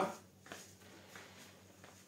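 Faint handling noises from a folding aluminium wheelchair: a couple of light knocks and rustles as its frame is worked after the push bar is folded down.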